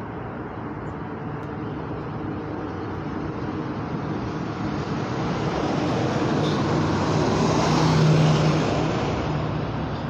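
Vehicle and road noise: a steady rush with a low hum under it, growing louder toward the end and then easing off.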